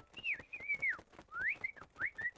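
A cartoon bird character's whistled chirps: several short whistles that swoop down and up in pitch, one held with a slight wavering.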